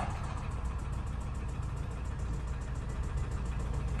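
Nissan petrol engine idling at about 1,000 rpm in Park, with a rapid, even knock that sounds like an old diesel. The engine was run three quarts low on oil and is judged worn out and done for: the noise is not the belt.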